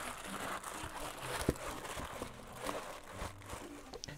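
Plastic-lined canvas bag being opened out by hand: the plastic lining crinkles and the fabric rustles softly throughout, with a few small clicks.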